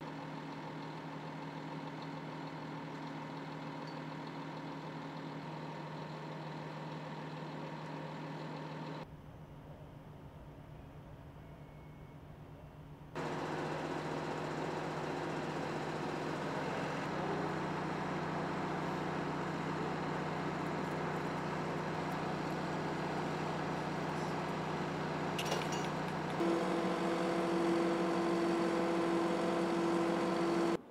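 Steady hum of an idling engine or machinery, with several steady tones running through it. It changes abruptly three times, dropping at about 9 seconds, coming back louder at about 13 seconds, and growing louder again with a stronger mid-pitched tone for the last few seconds.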